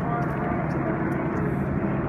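A steady, even rumbling noise with faint voices mixed in.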